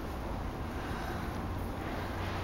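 Steady low rumble and hiss of background room noise, with no distinct sound events.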